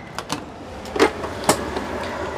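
A few short knocks and a thump as a person climbs into a bus's driver's seat and settles in, the loudest about a second in and half a second later.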